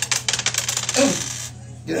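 Dice shaken and rattling in a hand, a dense run of quick clicks for about a second. A short voice sound follows, then a throat clear near the end.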